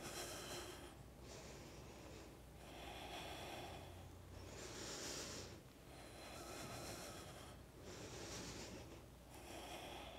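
A person breathing steadily and faintly through the nose in a slow in-and-out rhythm, with each breath lasting about a second.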